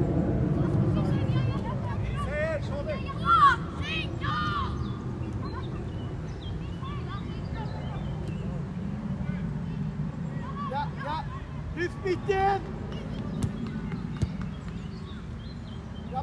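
Scattered shouts and calls from young players and spectators at an outdoor youth football match, loudest about three to four seconds in and again near twelve seconds, over a steady low rumble.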